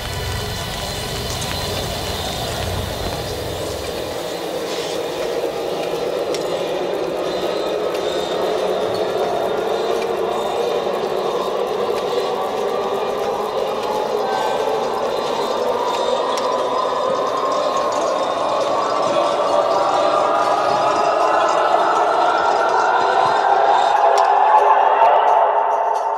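Opening of a downtempo electronic track: a dense, noisy drone that slowly rises in pitch and swells louder over the whole stretch. A low rumble underneath drops away about four seconds in.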